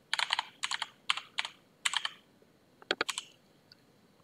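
Computer keyboard being typed: keystrokes come in short runs of a few quick clicks with pauses between, as an IP address is entered.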